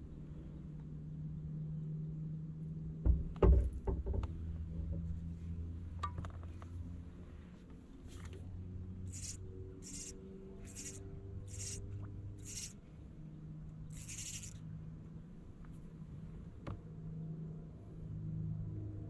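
Bow-mounted electric trolling motor running steadily at slow trolling speed, a low hum with shifting pitch. A few loud knocks come about three seconds in, and midway there is a run of six short hisses under a second apart, followed by one longer hiss.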